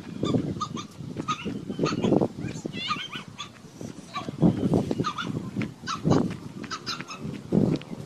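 Repeated short animal calls, with a bird chirping about three seconds in, over footsteps on a dry dirt path.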